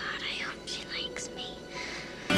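A girl whispering a short line to herself, breathy and soft.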